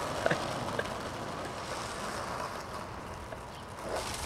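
Faint steady outdoor street noise that slowly fades, with a couple of soft clicks in the first second.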